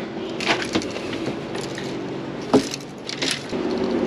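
Scattered knocks and light clatter, a handful over a few seconds with one louder knock past the middle, as a bundle of rigged fishing rods and reels is handled and carried, over a steady faint hum.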